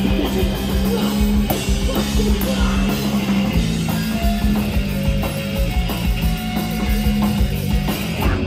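A live hardcore punk band playing loud, distorted electric guitar, bass and drums at full volume, with no vocals.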